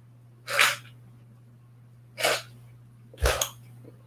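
Three short, breathy sneezes, a second or two apart.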